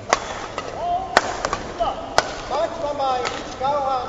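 Badminton rally: three sharp racket strikes on the shuttlecock, about a second apart, with shoes squeaking on the court mat, more often towards the end.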